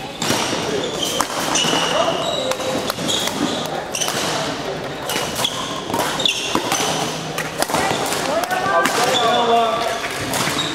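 Badminton rally in a sports hall: sharp racket strikes on the shuttlecock, footsteps and brief high-pitched squeaks of court shoes on the hall floor, with voices in the background.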